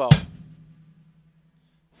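One stroke of bass drum and closed hi-hat together on a drum kit, the last note of a slowly played beat of a half-time shuffle groove; the low drum tone rings out and fades over about a second and a half.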